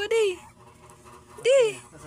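A young baby cooing: two short pitched vocal sounds, one right at the start and one rising and falling about a second and a half in.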